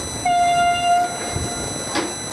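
A horn sounding once: a single steady note, just under a second long.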